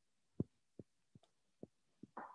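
Near silence broken by four faint, short, dull thumps at uneven intervals.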